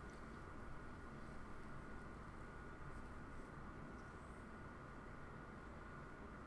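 Faint room tone: a steady low hiss with a thin, steady high whine running under it, and no distinct event.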